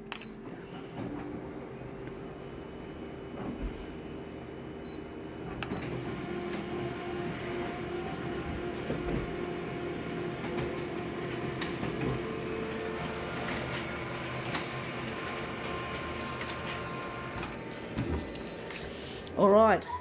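Konica Minolta bizhub colour copier running a copy job just after Start is pressed: a quieter scan first, then the print engine's steady whirring hum with a few constant whining tones, louder from about six seconds in, as it prints two full-colour copies. The running stops a couple of seconds before the end.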